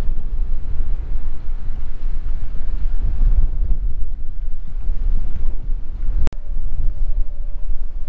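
Wind buffeting the camera microphone: a loud, gusty low rumble. About six seconds in, a single sharp click with a momentary dropout breaks it.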